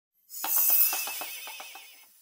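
Short intro sting for the channel logo: a bright shimmering burst with a quick run of pulses and a wavering high tone that slides slightly down, fading away over about a second and a half.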